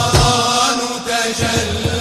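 An Islamic nasheed sung by a male vocal group holding long chanted notes in unison, accompanied by hand drums; the drum strokes thin out briefly, then come back in about a second and a half in.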